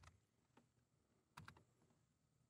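Near silence with a few faint computer keyboard key clicks, a small cluster about one and a half seconds in.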